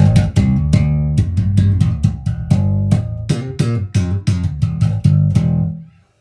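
Slap bass played on a Richwood 1970s-style Jazz bass copy with its strings set very low, through a Laney RB4 bass amp and 1x15 extension cabinet. Sharp slaps and pops come about four a second over deep, loud bass notes, and stop just before the end.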